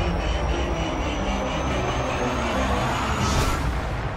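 Trailer sound design: a steady low rumbling drone with a faint high tone rising slowly, and a brief whoosh near the end.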